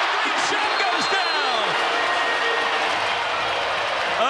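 Basketball arena crowd noise, with sneakers squeaking on the hardwood and the ball dribbling during a crossover in the first second or so.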